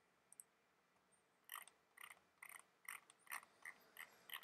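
Faint clicks of a computer mouse: a quick pair about a third of a second in, then a run of short ticks about two a second from about a second and a half in, from the scroll wheel or buttons.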